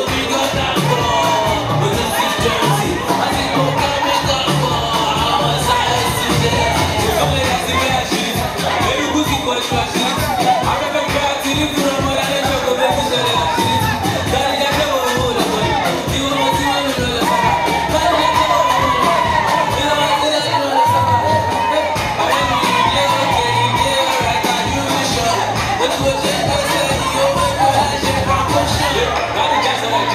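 Loud dance music with a steady beat, and a crowd of dancers shouting and cheering over it throughout.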